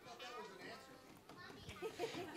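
Faint murmur of children's and audience voices in a large hall.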